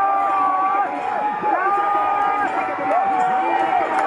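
Several men's voices chanting in long held notes, rising and falling, over the noise of a large crowd at a snake boat race.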